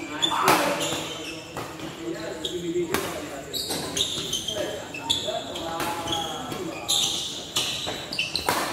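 Badminton doubles rally: rackets striking the shuttlecock with sharp hits about every second, and shoes squeaking on the court mat, with voices murmuring in the hall.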